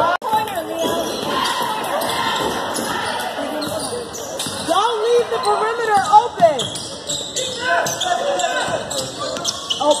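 A basketball being dribbled on a hardwood gym floor during a game, with players' and spectators' voices calling out in the gym, loudest about five to six seconds in.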